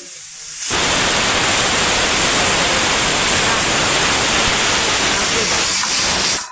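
Aluminium pressure cooker on a gas stove blowing its whistle: steam jets out from under the weight valve with a loud, steady hiss and a high whistle, starting about a second in. This is the cooker venting once it has come up to pressure.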